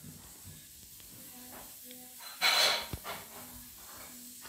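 A quiet room with faint, steady low tones on and off, and one short breathy hiss about two and a half seconds in, followed by a small click.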